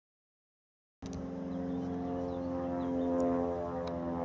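Silence for about a second, then a light propeller plane towing a banner, its engine droning steadily overhead.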